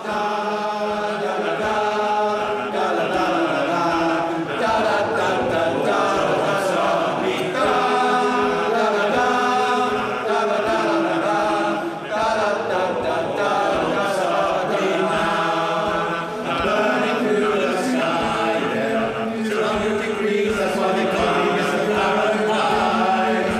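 Male voice choir singing a cappella in close harmony, held chords shifting every second or two, with no instruments.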